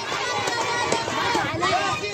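Crowd of protesters chanting and shouting together, many voices overlapping.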